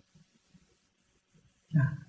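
Near silence in a pause of a man's speech; his voice starts again near the end.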